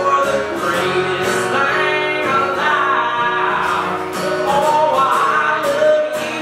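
A man singing live while strumming an acoustic guitar, holding long sung notes over steady strumming.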